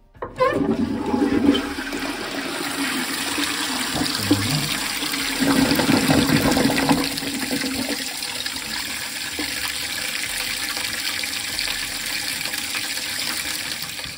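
Toilet being flushed and the cistern refilling: a rush of water starts abruptly and then runs on as a steady hiss of water through the inlet.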